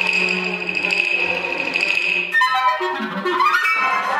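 Contemporary chamber ensemble of flutes, clarinets, strings and pianos playing live: a held high tone over a low sustained note breaks off about halfway through into sliding pitches, then a dense new chord sets in near the end.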